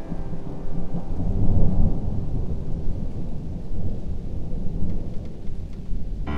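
Thunder rumbling low and uneven, loudest about a second and a half in, with rain falling, as the last piano notes die away at the start.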